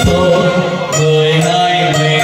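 Live kèn tây brass band music: held melody notes over a steady low bass note.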